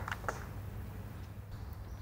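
Quiet background ambience: a faint steady low hum with light hiss, and a couple of faint short sounds just after the start.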